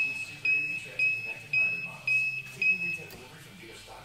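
An electronic beeper sounding six short, high beeps about twice a second, then stopping about three seconds in.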